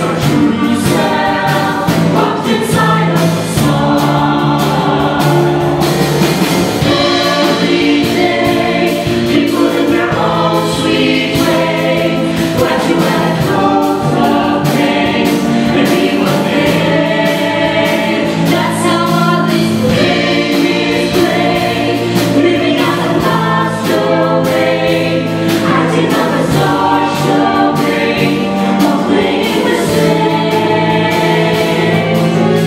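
Mixed show choir singing in harmony over instrumental accompaniment with a steady beat.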